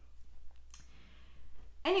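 A woman's faint, breathy exhale after a hard core-exercise hold, with a couple of soft clicks.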